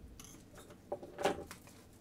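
Plastic shrink-wrap being peeled off a small cardboard AirPods box: a few short crinkling rustles, with a tap a little under a second in and the loudest rustle just after it.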